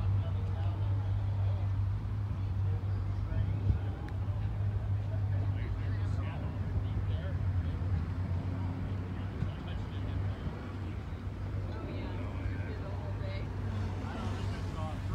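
Steady low hum of an idling vehicle engine, with faint talking.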